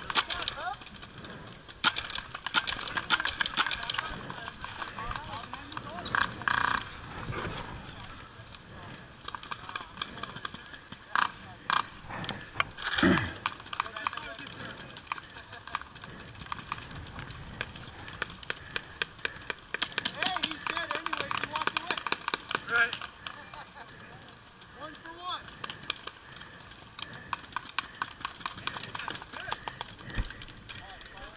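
Paintball markers firing at a paintball field: rapid strings of sharp pops, the densest bursts a couple of seconds in and again about two-thirds of the way through, with single louder shots between. Distant shouting from players runs under the shots.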